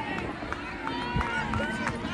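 Crowd of spectators talking and calling out over one another, many voices at once, with a few scattered claps.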